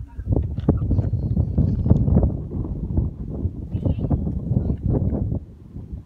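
Wind buffeting a phone microphone: a loud, irregular low rumble with uneven gusty surges, easing off near the end.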